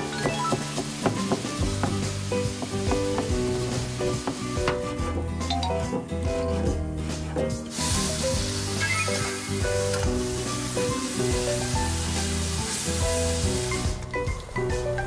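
Sliced meat and green onion sizzling in a frying pan as they are stir-fried and stirred, the sizzle loudest from about halfway through, over background music.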